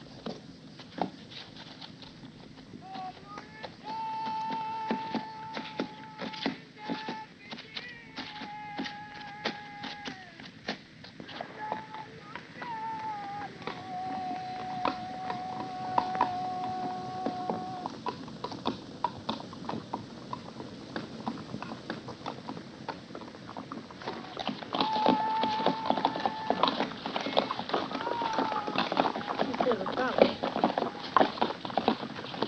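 A man's voice singing a chant in long, drawn-out held notes that bend at their ends, over a steady clatter of hoofbeats from working animals. The hoofbeats grow louder and thicker near the end.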